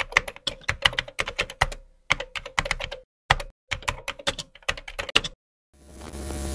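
Computer keyboard typing: rapid key clicks in four bursts with brief pauses between. Near the end a hiss of static swells up.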